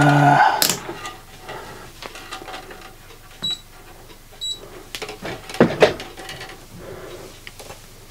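Handling clicks and rustle as a digital multimeter is worked. The meter gives two short high beeps about a second apart around the middle, and a couple of louder knocks come near the end as the probe is handled.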